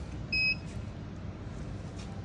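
A single short electronic beep from the air permeability tester's touchscreen, about a third of a second in, as a button on the screen is pressed.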